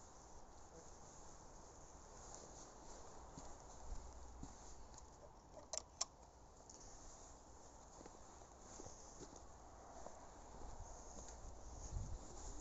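Faint footsteps crunching on fresh snow, with two sharp clicks close together about halfway through.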